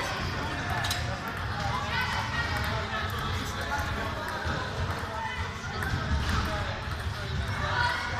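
Indistinct chatter of several voices in a sports hall, with a few light clicks of table tennis balls bouncing on tables and bats.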